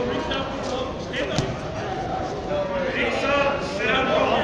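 Indistinct shouting and talk from coaches and spectators, echoing in a large gym, with one sharp knock about one and a half seconds in.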